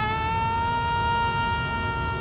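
A boy's long high scream held at one steady pitch, rising straight out of startled cries, over a low rumbling noise.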